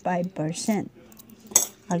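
Small metal coins being picked up off a stone tile floor, with a single sharp clink of coin on tile about a second and a half in.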